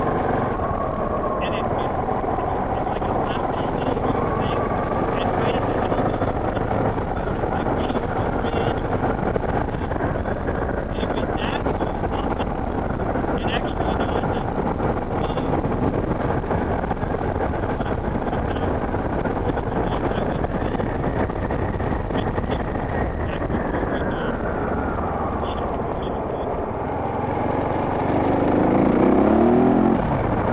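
Dual-sport motorcycle engine running on the move along a gravel road, with wind rushing over the helmet microphone. The engine pitch rises and falls slowly with speed, with scattered small ticks. It gets louder near the end as the rider accelerates.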